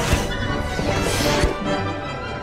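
Dramatic film-score music with sweeping whooshes and a sharp low impact hit about one and a half seconds in.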